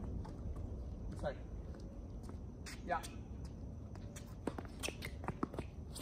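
Tennis play on an outdoor hard court: a quick run of sharp, faint knocks in the second half from the ball being struck and bouncing, mixed with sneaker footsteps on the court surface.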